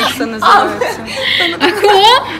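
Two women laughing and chuckling together, mixed with a few spoken words.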